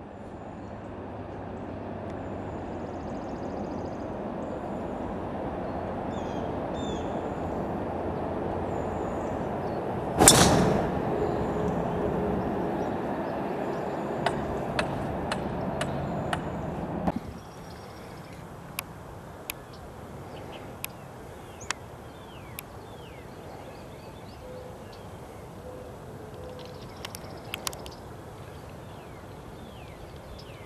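A golf driver striking the ball off the tee: one sharp, loud crack about a third of the way in. Short bird chirps sound over steady outdoor background noise, which drops off sharply a little past halfway.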